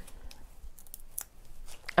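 Faint handling sounds: several small, scattered clicks and light rustles as a spool of wire is picked up and handled over a plastic sheet.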